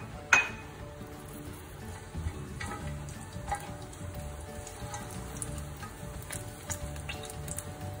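Whole spices and bay leaves sizzling gently in hot oil in a stone-coated frying pan, with a sharp click about a third of a second in and a few light touches of a silicone spatula against the pan.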